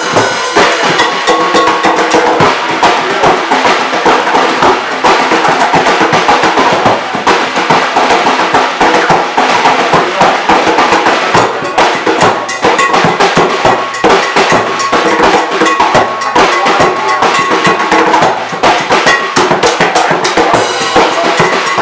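Drum kit and cajón played together in a fast, continuous rhythm: snare and cymbal struck with sticks over a suitcase kick drum, with the hand-played cajón beneath.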